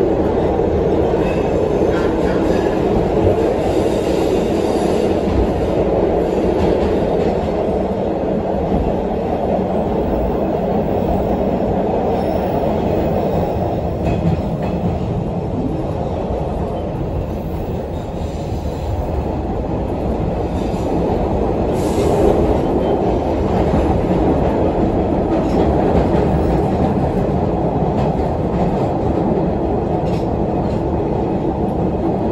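Inside an MBTA Orange Line 01200-series subway car built by Hawker Siddeley, riding along: a steady, loud rumble of wheels and running gear, with a few faint knocks over the rails.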